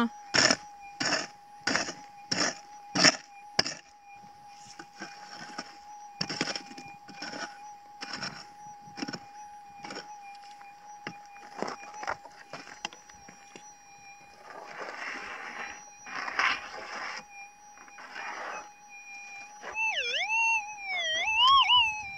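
Minelab SDC 2300 gold detector humming a steady threshold tone while a pick strikes the hard ground, quickly at first, then in scattered knocks and scrapes of soil. Near the end the tone warbles up and down as the coil passes over the hole: a gold target's signal, which she now calls a big signal.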